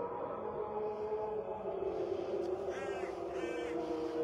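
A muezzin's voice calling the dawn adhan over the mosque loudspeakers, drawing out one long sung note that slowly wavers in pitch. About three seconds in, two short calls sound above it.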